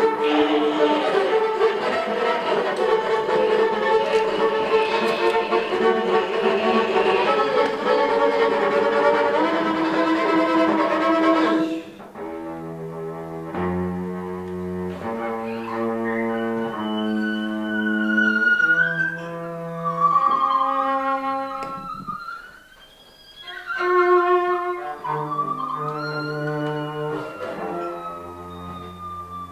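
Cello bowed hard in a dense, sustained improvised passage that cuts off suddenly about twelve seconds in. After that come steady held notes and chords that change about once a second, with high sliding tones over them.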